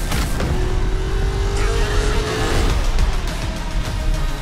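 Car engine revving with a long, slightly rising note, mixed with music as in a film trailer soundtrack.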